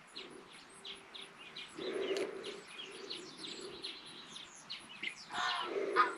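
Birds chirping over and over with short high chirps, and hens clucking softly underneath. A louder bird call comes near the end.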